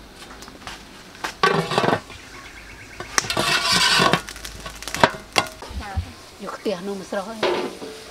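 Aluminium steamer pot and lid being handled: scraping and a second-long rush of noise as the domed lid goes on, then two sharp metal clinks about five seconds in.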